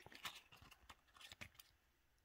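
Faint rustling and a few light ticks of fresh basil leaves being handled, dying away to near silence about one and a half seconds in.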